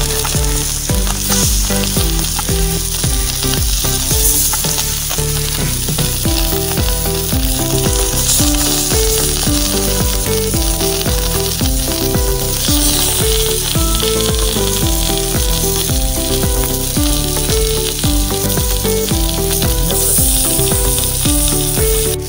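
Masala-coated whole fish frying in oil on a large flat iron pan, sizzling steadily with scattered small crackles. A pattern of short pitched notes runs underneath.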